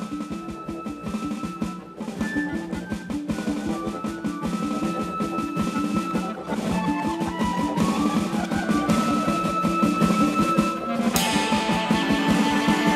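Instrumental jazz-rock cover played on a Roland TD-9KX2 electronic drum kit with acoustic guitar picking: a busy, steady drum groove under stepping guitar notes, growing louder. About eleven seconds in, a cymbal crash opens a louder, fuller section.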